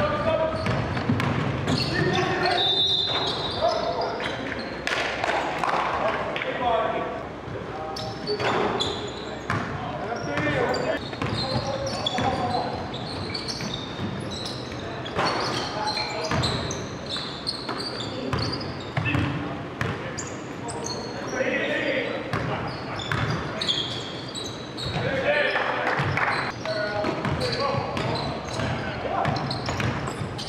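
Basketball being dribbled on a hardwood gym floor, bouncing again and again, amid indistinct shouts of players in the hall.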